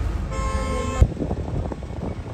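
A vehicle horn gives one short steady toot of under a second, cut off by a sudden thump about a second in, over the low rumble of a moving vehicle.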